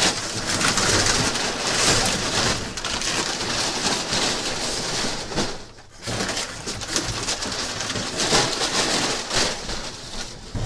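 Plastic bags and packing paper crinkling and rustling as items are pulled out of a packed box, with a brief lull about six seconds in.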